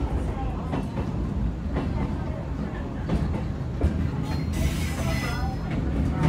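Electric commuter train running on the rails, heard inside the driver's cab: a steady low rumble with occasional clicks, and a brief hiss about four and a half seconds in.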